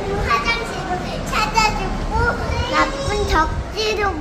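A young girl talking in a high, lilting voice: child's speech only.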